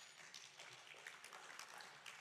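Faint, distant scattered applause from a sparse audience in a hall, a thin crackle of clapping close to near silence.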